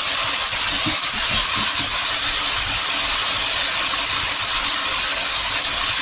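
Squid, onions and whiting frying in oil in a nonstick pan, giving a steady sizzle while a spatula stirs them.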